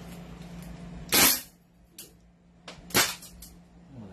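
BLK M4A1 gas blowback airsoft rifle fired twice in single shots, about two seconds apart, each a sharp gas pop; a faint click comes between them.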